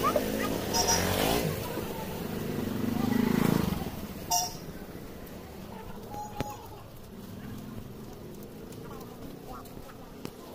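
A three-wheeled auto-rickshaw engine running close by, its steady hum dying away within the first couple of seconds. Street noise swells briefly about three seconds in, and a short high blip follows about a second later.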